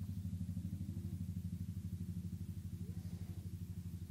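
A low, steady mechanical hum, like a motor or engine running, with a fast, even pulse of about a dozen beats a second.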